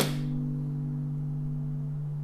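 Background music: a low guitar chord left ringing steadily, with a short bright swish at the very start.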